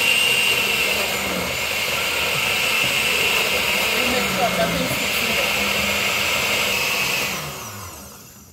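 Oster countertop blender running steadily, blending chopped mangoes and water into juice while more fruit pieces are dropped in through the lid. The motor noise dies away near the end as it is switched off.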